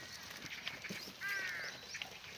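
A single short animal call, about half a second long, a little past the middle, over faint scattered clicks and rustling.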